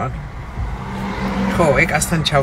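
Steady low hum of a car's engine and road noise, heard from inside the cabin.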